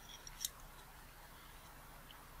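A single light, sharp click about half a second in, with a few fainter ticks around it, from the metal lens parts being handled and fitted together; otherwise quiet.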